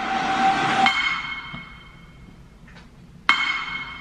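Movie-trailer sound design: two sharp metallic strikes about two and a half seconds apart, each ringing on like a bell and fading, the first following a short noisy swell.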